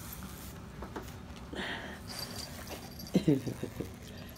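Two small dogs playing tug with a plush toy on a bed: soft scuffling, with a short breathy snuffle about halfway through. A person laughs briefly near the end.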